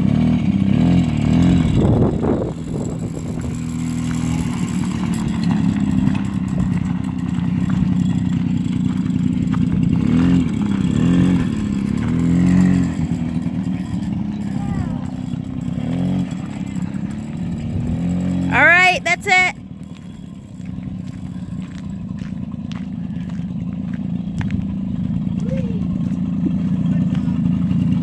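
Suzuki LT50 quad's small two-stroke engine running as it is ridden, its pitch wavering up and down with the throttle. A short, loud, high-pitched squeal comes about nineteen seconds in. After that the engine is briefly quieter, then gradually builds again.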